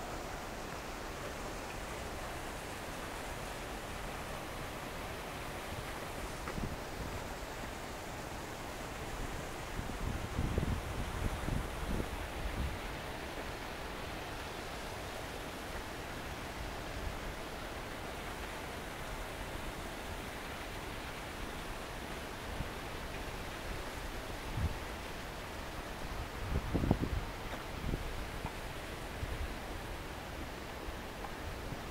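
Steady outdoor hiss with low buffeting of wind on the microphone, strongest for a few seconds about ten seconds in and again briefly near the end.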